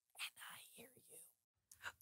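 A man whispering very faintly, a repeated phrase said barely above silence.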